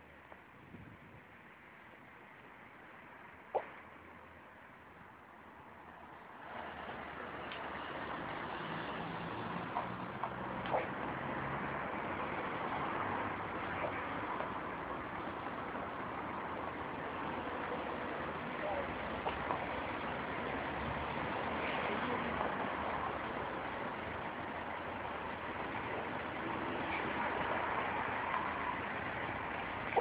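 Street traffic noise, faint at first and growing louder about six seconds in, with a few sharp clicks.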